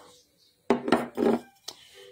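A sharp knock and a light click from a Scentsy warmer's lampshade being handled and turned, with a brief murmur of voice between them.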